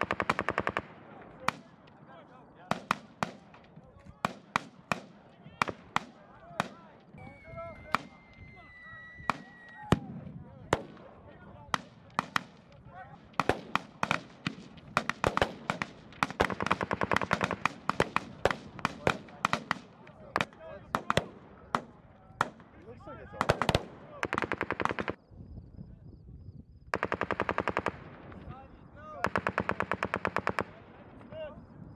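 Live small-arms gunfire: scattered single rifle shots with repeated bursts of rapid automatic fire, the longest runs lasting a few seconds.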